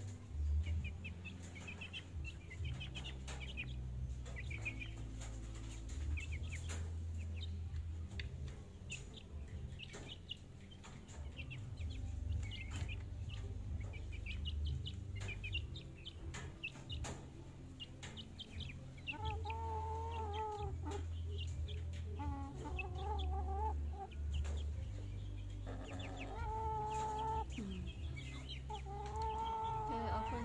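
Young chickens peeping with thin, high chirps, joined from about two-thirds of the way through by lower, wavering chicken calls repeated several times.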